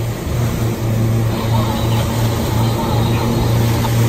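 Honda outboard motors running steadily at cruising speed, a constant low drone, over the rushing hiss and splash of the boat's wake.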